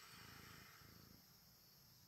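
Near silence: faint room tone inside a car.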